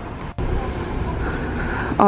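Steady low rumble of road traffic, starting after an abrupt cut about a third of a second in.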